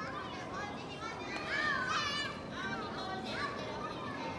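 Young children's high voices calling and chattering over a general background murmur of a crowd, loudest about halfway through.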